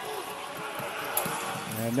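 Indoor futsal game sound on a wooden court: a steady din of players and spectators echoing in the hall, with one sharp knock about a second in.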